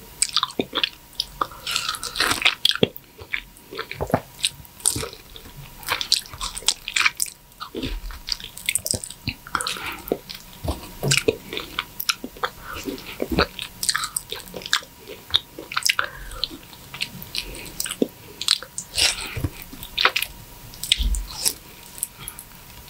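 Close-miked mouth sounds of eating ripe, juicy mango flesh by hand: wet bites, sucking, slurping and chewing of the soft fibrous fruit, in quick irregular smacks and clicks.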